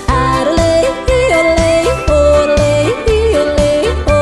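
Country song with a female singer yodeling, her voice flipping abruptly between low and high notes over a steady beat.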